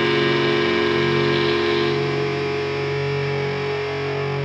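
Industrial metal recording: a distorted, effects-laden electric guitar holds sustained notes with no drum hits. The level eases slightly about two seconds in.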